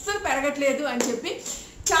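A woman talking, with a sharp clap of the hands near the end.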